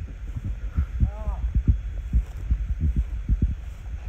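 Irregular low thumping and rumble on the microphone, with a brief voice sound a little over a second in.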